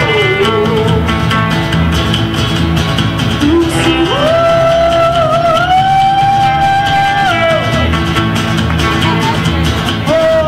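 Live band music: a woman singing over strummed acoustic guitar and electric guitar, holding one long note from about four seconds in to about seven and a half.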